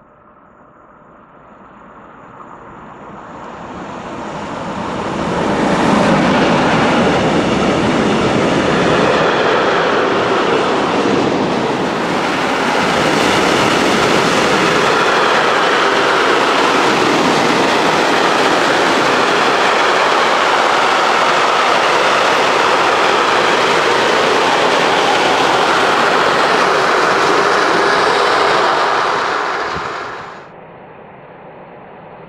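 Freight train of tank wagons running through a station at speed. The noise builds over the first six seconds as the locomotive arrives, then holds as a long, steady rumble of wagons on the rails, and cuts off abruptly near the end.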